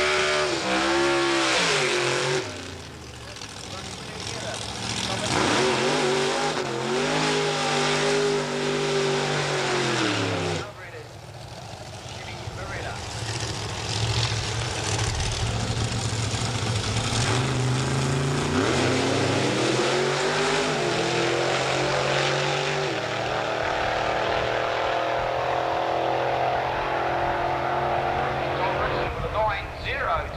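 Drag-racing doorslammer cars' engines revving hard, their pitch rising and falling. The sound breaks off abruptly twice, about 2.5 and 10.5 seconds in, then climbs steadily in pitch and loudness under full throttle.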